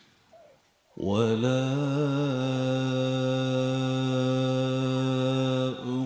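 Male voice chanting a single long, steady held note in Quran recitation. It starts about a second in, wavers slightly at first, and breaks off near the end.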